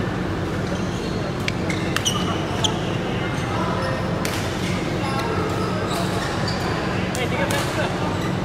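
Badminton rackets striking shuttlecocks in sharp, scattered pops, with short high squeaks of court shoes, over background chatter and a steady hum in a large sports hall.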